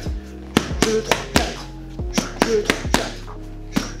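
Boxing gloves smacking focus mitts in a fast, short-range combination of rear uppercut, cross, hook and cross: a quick run of sharp slaps in the first half and another near the end, over steady background music.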